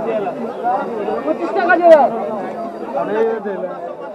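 Several people talking at once in indistinct chatter, with voices overlapping throughout.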